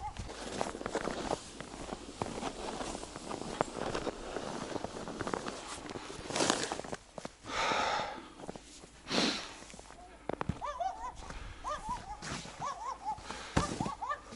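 A snow shovel scraping fresh snow off wooden boards in several separate strokes, with footsteps crunching in the snow between them. A run of short chirping calls comes in over the last few seconds.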